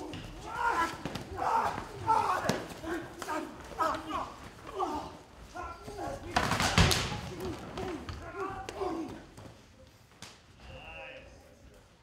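Men's voices during a staged fistfight, with several thuds and blows. The loudest hit comes about seven seconds in, and the sound fades near the end.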